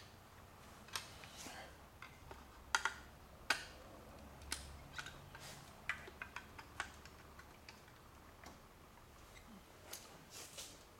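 Screwdriver pushing down on the spring latches of an HEI distributor cap to release them, making a scattered series of sharp clicks, the loudest about three and three and a half seconds in.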